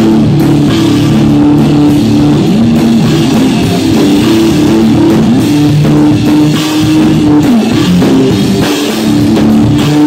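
Live rock band playing an instrumental passage: electric guitar, bass guitar and drum kit at full volume, picked up by a phone's microphone.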